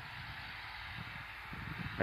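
Faint, steady rush of water running along an earthen field irrigation channel fed by a tube well.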